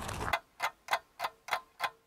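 Clock ticking, just over three ticks a second, starting about a third of a second in as the outdoor background cuts away; an edited-in sound effect.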